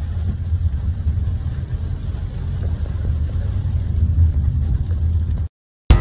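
Manual car's engine running in second gear with road rumble, heard from inside the cabin, as the clutch comes back up after a downchange. The steady low rumble cuts off suddenly about five and a half seconds in.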